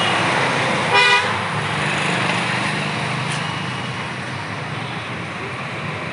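Steady road traffic noise, with one short vehicle horn toot about a second in.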